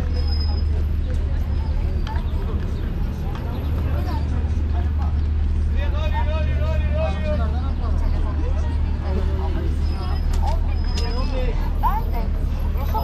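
Busy waterfront street ambience: a steady low rumble of traffic and idling buses under the chatter of passersby, with one nearby voice speaking clearly for a second or so about six seconds in.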